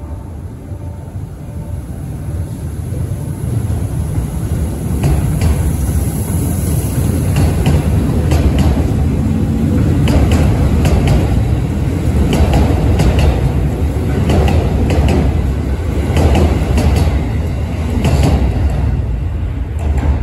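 Electric commuter train running past close by. A low rumble grows louder over the first few seconds, then wheels click irregularly over rail joints as the cars go by.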